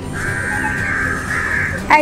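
A bird's harsh, drawn-out call lasting about a second and a half, with a short break near its end, over soft background music.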